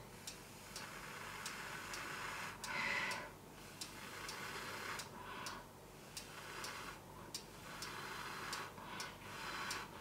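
Faint, irregular small clicks, about one or two a second, over a soft hiss that swells and fades now and then: quiet handling noise close to the microphone.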